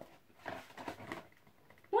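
Faint rustling and small clicks of a cardboard action-figure box and its insert being handled and pulled open, with a brief faint voice-like sound about halfway through.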